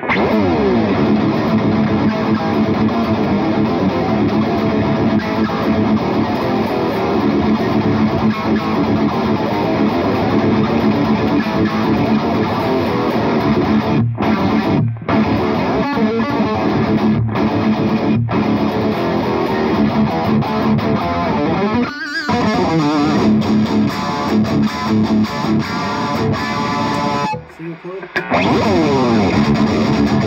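Epiphone Les Paul Custom Prophecy electric guitar with Fishman Fluence pickups, played through a Boss Katana amp as high-gain metal rhythm riffing. The playing is loud and continuous, broken by a few short stops in the middle and a longer one near the end.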